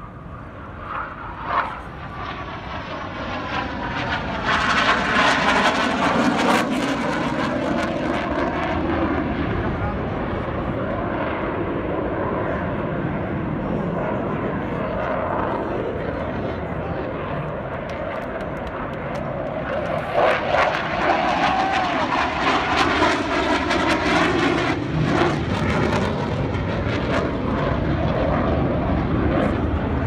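Blue Angels F/A-18 Hornet jets flying past. The jet noise builds over the first few seconds and falls in pitch as they pass, then stays loud, with a second pass of falling pitch about two-thirds of the way through.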